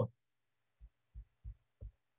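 Four faint, soft low thumps, about three a second, in an otherwise quiet room.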